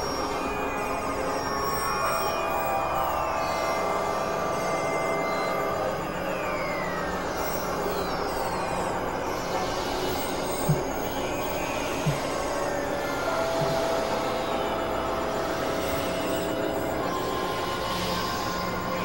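Dense, layered experimental electronic music: sustained drone tones and several falling pitch glides over a low rumble. Two short, sharp hits come a little past halfway.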